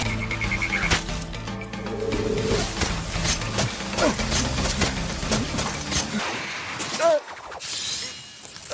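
Anime fight sound effects over a dramatic music score: a quick string of sharp hits from palm strikes, with a short cry near the end.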